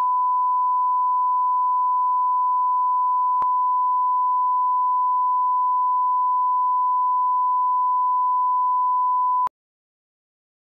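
Steady 1 kHz line-up test tone that accompanies colour bars, a reference tone for setting audio levels. It holds one unchanging pitch, with a faint click about three and a half seconds in, and it cuts off abruptly about half a second before the end.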